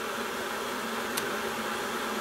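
Electric kettle heating with a steady hiss, and one small click about a second in as the current clamp's range switch is flicked over.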